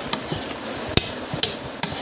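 A metal spoon clicking against a plastic plate while eating, about four sharp clicks, the loudest about a second in.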